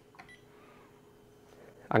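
A single faint click with a brief ring about a quarter second in, then low steady room hum. A man's voice starts at the very end.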